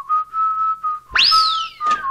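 Whistling: a steady held note, then about a second in a quick upward swoop that glides slowly back down, a comic sound effect.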